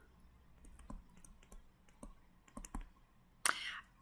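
Faint, scattered light taps and clicks of a stylus writing on a tablet screen, with a short breath near the end.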